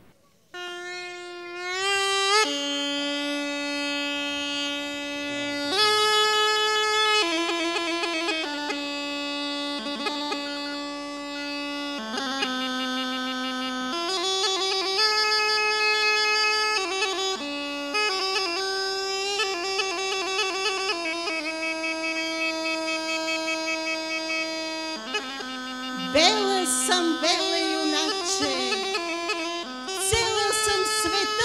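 Rhodope kaba gaida, a large goatskin bagpipe, playing a slow melody of long held notes over a steady low drone. It starts with an upward swoop in pitch in the first couple of seconds.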